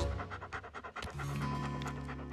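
Cartoon puppy panting in quick short breaths over background music. The panting stops about a second in, and held music notes carry on.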